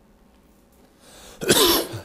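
A pause of quiet room tone, then one short, loud cough from a man about a second and a half in.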